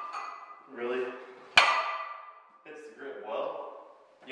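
A plate-loaded homemade axle bar, a barbell sleeved in galvanized pipe, set down about one and a half seconds in: a single sharp clank of metal with a ringing tail.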